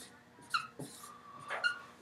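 Dry-erase marker squeaking and scratching on a whiteboard as a chemical formula is written: a few short strokes, with high squeaks about half a second in and again near the end.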